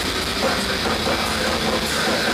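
Live heavy metal band playing at full volume: a dense wall of distorted electric guitars over drums, with a steady wash of cymbals.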